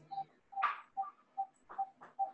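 Faint, regular short ticking beeps, all at one mid pitch, about two and a half a second, coming through a video call's audio. A brief hiss is heard about a third of the way in.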